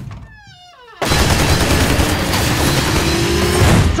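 A short falling, pitched sound effect, then about a second in a sudden, loud, sustained burst of rapid automatic gunfire.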